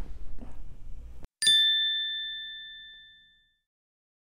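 A single bright ding, a chime ringing on two clear pitches, about a second and a half in, fading away over about two seconds. It is an outro sound effect over the closing logo card.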